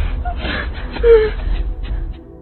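Muffled gasps and whimpers from a gagged woman over a low, steady rumble, with a short, louder muffled cry about a second in.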